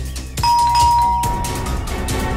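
A two-tone ding-dong doorbell chime about half a second in, a higher note followed by a lower one, ringing on over dramatic background music.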